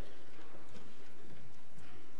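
Footsteps of men walking across the pulpit platform, a few light knocks of shoes over the room's background noise.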